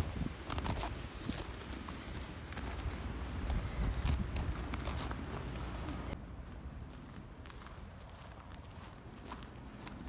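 Footsteps on snow, irregular steps of two people walking over a low rumble; the steps thin out and grow quieter after about six seconds.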